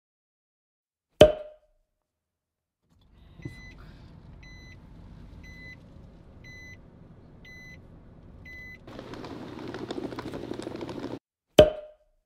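Inside a car: a low engine and road rumble with a car's warning beep sounding six times, about once a second, followed by a louder rushing noise for about two seconds. A sharp hit with a short ring comes about a second in, and the same hit comes again near the end.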